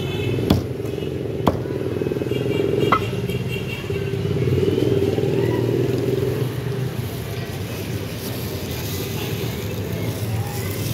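Meat cleaver chopping chicken on a wooden chopping block, three or four sharp strikes in the first three seconds, over a steady engine hum that swells midway.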